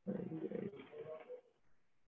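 A person's brief wordless vocal sound, pitched and wavering, lasting about a second and a half from the very start.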